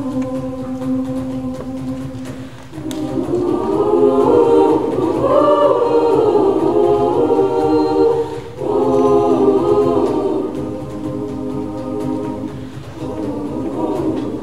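Girls' high school choir singing sustained chords in close harmony, swelling to its loudest in the middle, with brief dips about two and a half seconds in and again just past eight seconds, then softer toward the end.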